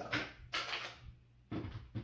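Handling noise as a pistol is taken from the waistband and set down on a stone tabletop: a short rustle about half a second in, then a knock near the end.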